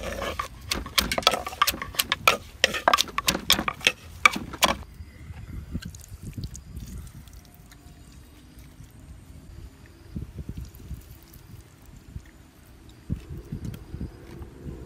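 Pestle pounding in a stone mortar: a quick, loud run of knocks that stops about five seconds in, followed by quieter handling sounds.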